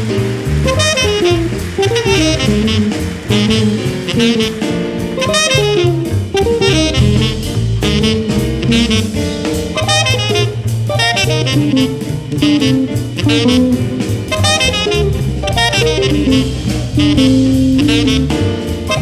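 Tenor saxophone playing fast, improvised jazz lines, with a drum kit's cymbals and drums keeping time behind it.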